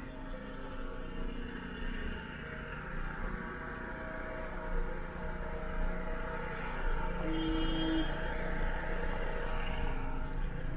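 Street traffic: a steady hum of car engines and tyres that swells gradually, with a short steady tone about seven seconds in.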